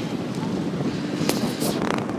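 Wind buffeting the phone's microphone, an even rushing noise, with a faint steady low hum underneath and two short clicks past the middle.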